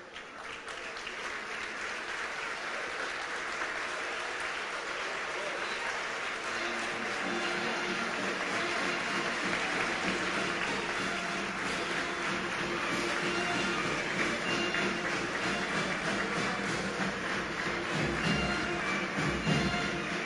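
Audience applauding, with music playing underneath from about six seconds in.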